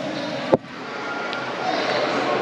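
Steady ambient noise of a large indoor hall, with a single sharp click about half a second in.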